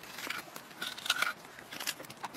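Crisp scraping and crunching as the white flesh is scooped out of a hollowed black radish, a run of short, rough strokes.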